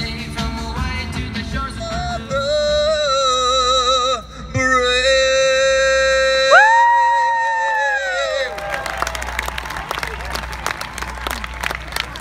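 A solo voice sings a phrase and then holds a long final note with vibrato, with a higher note swelling up beside it before both fall away. A crowd then breaks into cheering and applause.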